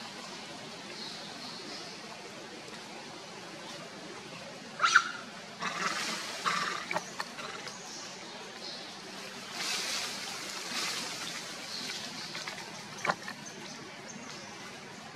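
Steady outdoor background hiss, with short bursts of rustling and a few sharp snaps from about five seconds in: monkeys moving among leafy tree branches.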